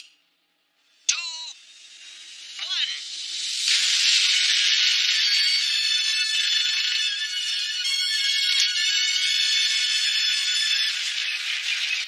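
Animated-show soundtrack: after about a second of silence come two short vocal cries. Then, from about four seconds in, a loud, steady hissing roar of jet thrusters firing sets in, with music score running over it.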